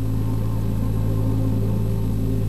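A steady, low droning chord that starts abruptly and holds unchanged: a sustained drone of background music under a news report.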